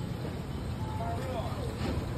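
A faint voice speaking over a steady low background rumble.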